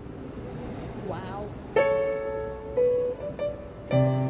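Grand piano played slowly by hand: after a fading pause, single notes struck a little under two seconds in and a few more over the next second and a half, then a fuller chord with low bass notes at the very end.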